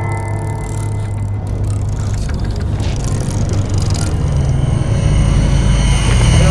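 Tense horror-film score: a low rumbling drone that builds steadily louder, with a high sustained tone coming in about four seconds in.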